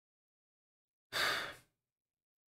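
After a second of dead silence, a man gives one short, breathy sigh lasting about half a second.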